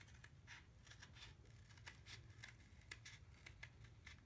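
Scissors snipping through a flattened cardboard toilet-roll tube in a run of faint, short cuts, about three a second.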